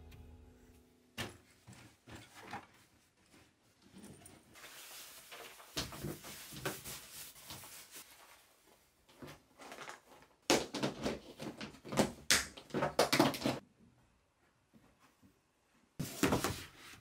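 Clothes being folded and packed into clear plastic storage boxes: fabric rustling with scattered knocks, then a dense run of plastic clattering and knocking, the loudest part, a little past the middle. A tail of soft background music ends about a second in.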